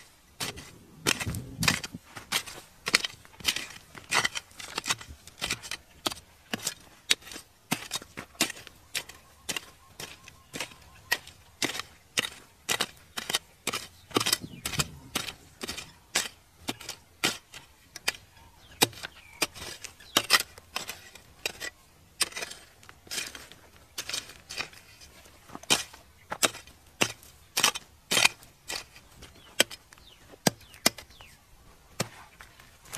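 A long digging pole striking and prying into stony soil and layered rock. It makes sharp, hard knocks about two or three times a second, with a duller thud about a second and a half in and again about halfway through.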